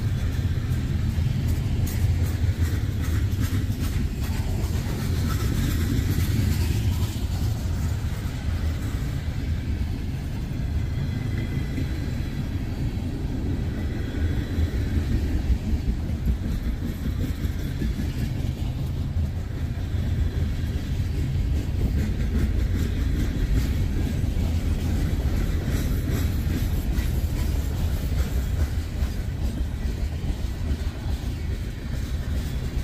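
Freight train of covered hoppers and tank cars rolling past on the near track: a steady rumble of steel wheels on the rails.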